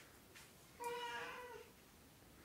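A cat meowing once: a single pitched call a little under a second long, starting about a second in, loudest at the start and fading away.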